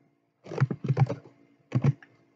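Computer keyboard keystrokes while editing text: a quick run of key presses about half a second in, then a few more near the end.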